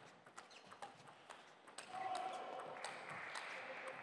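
Table tennis rally: the celluloid ball clicking off rubber paddles and the table in quick, uneven succession. A steady background hiss comes up about two seconds in.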